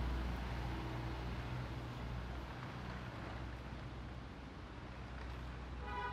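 Low steady hum of a vehicle engine, slowly fading, over a faint outdoor background hiss.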